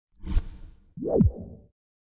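Two whoosh sound effects of an intro logo sting: a short one about a third of a second in, then a second one about a second in that sweeps down in pitch.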